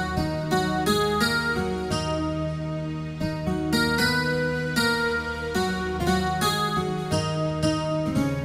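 Instrumental break in a keyboard-led cover song, with no singing: a melody of separately struck notes plays over a held low bass tone.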